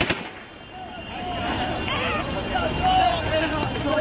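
A sharp bang right at the start, then a crowd of men shouting and calling out.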